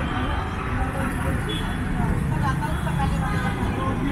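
Steady rumble of road traffic passing close by, with people talking in the background.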